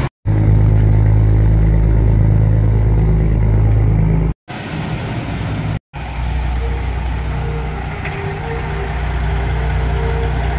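Street traffic: a motor vehicle engine running with a steady low rumble. The sound cuts out completely twice for a moment near the middle.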